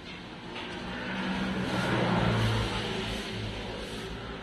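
A motor vehicle passing by: its engine hum and road noise swell to a peak about two seconds in, then fade.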